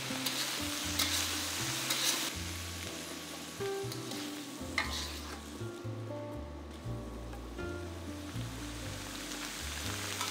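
Minced beef and potato wedges sizzling in a wok while a metal spatula stirs and tosses them, scraping and knocking against the pan now and then, to coat the potatoes in sauce.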